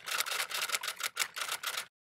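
Typewriter key-clicking sound effect, a rapid run of about seven clicks a second that stops just before the end.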